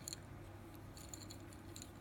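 Faint light clicking of a segmented plastic wiggly pen being flexed in the hand, over a steady low hum.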